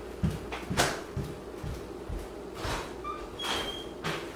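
A few light knocks and clatters of household handling, the sharpest about a second in, with a brief high ring near the end.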